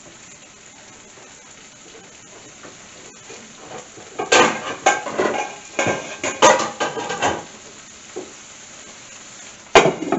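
Vegetables sizzling quietly in a frying pan with a little water. Several clattering knocks of cookware come in the middle, and a glass lid clanks onto the pan just before the end.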